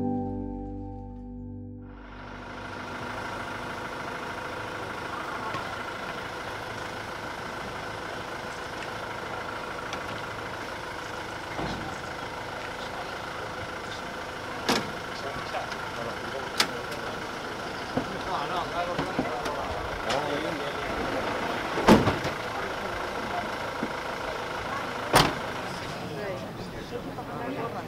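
Music fades out in the first two seconds, then street sound takes over: a crowd murmuring over a steady engine hum, likely the police van. Several sharp knocks come in the second half, the loudest near the end, from the van's doors being worked as officers load it.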